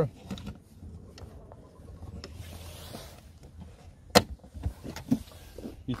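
Handling noises at an open car boot over a low steady hum: a soft scrape, then one sharp knock about four seconds in, with a few lighter clicks.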